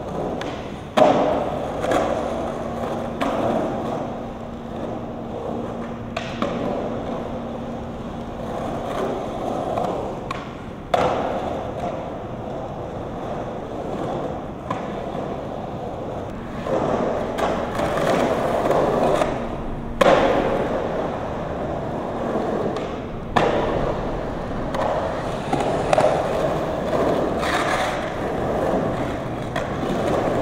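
Skateboard wheels rolling over a concrete skatepark bowl, the rolling rising and falling as the riders carve the transitions. A few sharp clacks of the board and trucks hitting the concrete are heard, about a second in, near the middle and again later.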